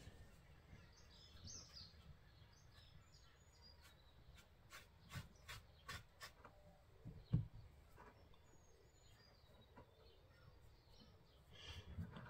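Near silence, with faint bird chirps in the background and a few soft clicks and taps; the loudest tap comes a little past seven seconds in.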